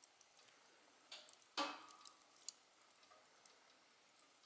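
Glowing embers of a wood fire ticking and crackling faintly, with one louder crack about a second and a half in and a few smaller pops around it.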